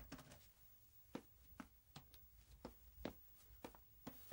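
A door latch clicks at the start, then faint footsteps, about two a second, as someone walks into a quiet room.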